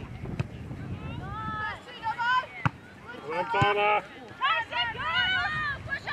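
High-pitched young voices shouting drawn-out calls across a soccer pitch, in several bursts, with a few sharp knocks between them.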